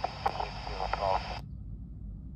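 Air traffic control radio voice on AM airband, heard through a Yaesu FT-60 handheld's small speaker with hiss, cutting off abruptly about one and a half seconds in as the transmission ends. A low hum remains after the cut.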